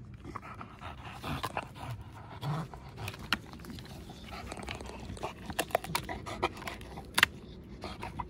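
An American bully dog panting while gnawing on a weathered wooden plank, with a run of sharp cracks and snaps as the wood splinters. The loudest crack comes about seven seconds in.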